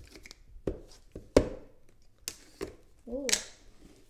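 Cardboard trading-card boxes and their plastic wrapping being handled and opened: a series of irregular sharp clicks and snaps, the loudest about one and a half seconds in, with some light rustling of wrap.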